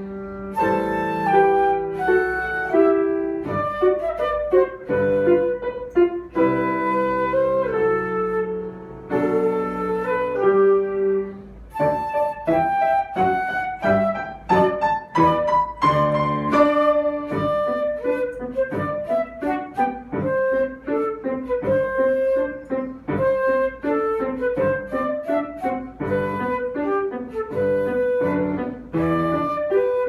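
Concert flute playing a melody with piano accompaniment. About twelve seconds in, the music turns to quicker, shorter notes.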